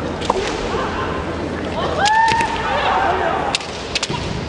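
Bamboo shinai striking and clacking together in several sharp cracks during kendo sparring, with a fighter's long kiai shout that rises in pitch about two seconds in.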